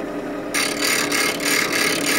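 Delta bench grinder running with a steady motor hum; about half a second in, the steel bevel of a chisel is pressed to the wheel and a harsh grinding hiss starts, pulsing rapidly. This is the heel of the bevel being ground away with a light touch to form a low-angle bevel.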